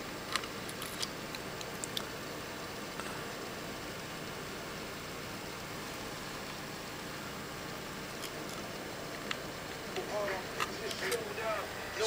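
Steady low hiss with scattered light clicks. Faint pitched, voice-like sound rises about ten seconds in.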